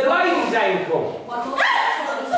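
High-pitched wordless whimpering cries, one through the first second and a second rising cry about one and a half seconds in.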